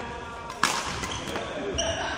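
A badminton racket striking a shuttlecock with one sharp crack about a third of the way in, followed by fainter knocks of play on the court.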